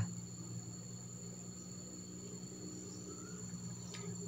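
Faint, steady high-pitched chirring of crickets, with a low steady hum beneath.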